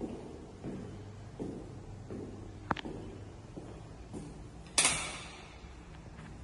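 Footsteps walking across a wood-look floor, a soft thud about every 0.7 seconds. A sharp click comes a little before halfway, and a louder brief rushing scrape comes near the end.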